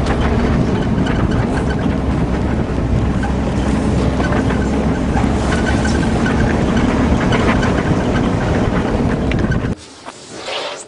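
An off-road vehicle driving over rough bush ground: a steady, loud engine and drivetrain rumble mixed with body rattle and wind. It cuts off suddenly near the end.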